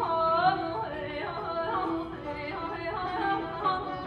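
Female vocalist singing Persian classical avaz in the Abu Ata mode, her line wavering in quick pitch ornaments, over plucked setar and tar accompaniment.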